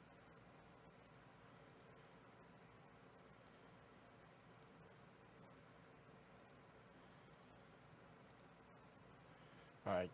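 Faint computer mouse clicks, scattered irregularly at roughly one a second, from repeatedly clicking a web page's randomize button.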